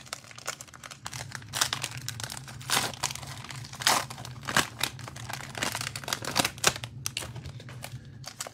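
Foil wrapper of a Panini Mosaic football card cello pack being torn open and crumpled by hand, a run of irregular crinkling crackles.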